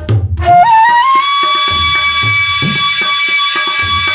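Bansuri (bamboo transverse flute) playing a melody: a few quick notes, then a slide up into one long held note. Low tabla strokes sound underneath.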